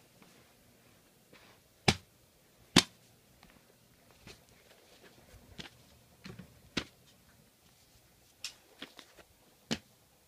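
Handling noise: scattered sharp taps and clicks, about five loud ones at irregular intervals with fainter ones between, as hands move plush toys about and knock the recording phone.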